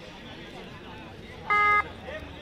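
Crowd chatter, cut into about one and a half seconds in by a short, loud, single-pitched buzzer tone lasting about a third of a second.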